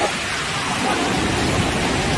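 Loud, steady rush of whitewater churning and breaking around rocks.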